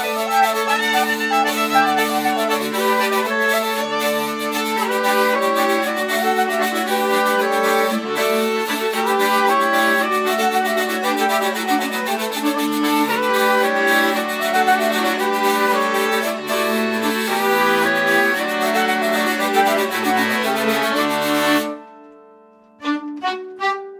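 A folk quartet of fiddle, saxophone, accordion and hurdy-gurdy playing a Scandinavian folk tune over a steady low drone. All the instruments cut off together shortly before the end.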